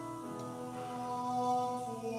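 A man singing a slow Advent hymn in long held notes, with sustained chords underneath.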